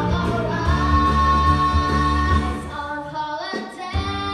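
A young girl singing a rock song into a microphone over a loud accompaniment with bass and drums. Near the end the accompaniment drops away and her voice slides up alone for a moment before the band comes back in.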